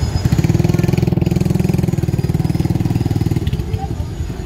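A motorcycle engine idling close by, a steady, rapid low pulse that fades a little near the end.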